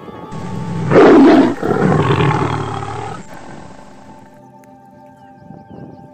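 A tiger's roar, dubbed in as a sound effect: loud, in two swells, rising about a second in and dying away by about four seconds. Background music runs underneath.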